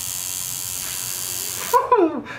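Electric tattoo machine buzzing steadily while its needle is held against the skin of a forearm, stopping abruptly shortly before the end.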